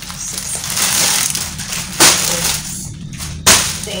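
Plastic crinkling and rustling as hands rummage in a black plastic bag and handle plastic-wrapped packets, with two sharp crackles, one about halfway through and one near the end.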